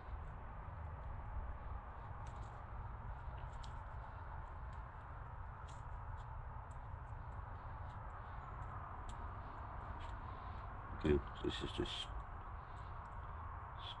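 Faint swishing and scattered small clicks of a paintbrush laying off wet gelcoat on a fibreglass mould, over a steady low rumble.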